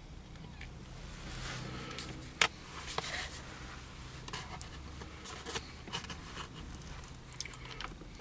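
Cardboard sandwich clamshell box being handled, with scattered light clicks and rustles and one sharper knock about two and a half seconds in, over a faint steady low hum.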